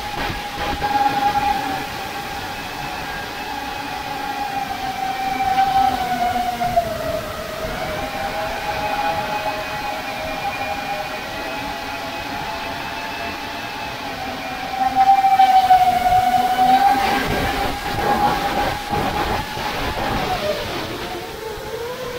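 FPV quadcopter's brushless motors and propellers whining in flight, picked up by the onboard action camera. The steady pitch sags and recovers with the throttle, dipping about a third of the way in and again near the end, and gets louder shortly before that second dip.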